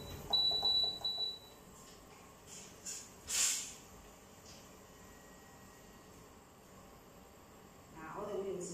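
Portable induction hob beeping: a few short, high, steady beeps in the first second and a half as its controls are pressed. A brief hiss follows about three and a half seconds in, then only faint room noise.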